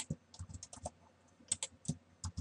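Light keystrokes on a computer keyboard, an irregular run of short clicks: a quick cluster about half a second in, then a few more near the end.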